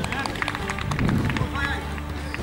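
Footballers calling out to each other on the pitch during play, with running footsteps and short knocks over a steady low hum.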